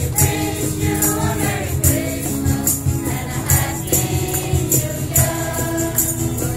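A group of carollers singing a Christmas carol together over a musical accompaniment, with a jingling percussion marking the beat at regular intervals.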